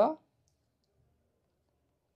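A man's spoken word cut off at the very start, then near silence from a noise-gated voice recording, with one faint tick about a second in.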